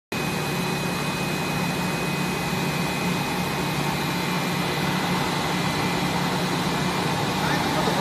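EPE foam sheet extrusion line running: a steady mechanical hum and hiss, with a low drone and two thin, high, steady whines.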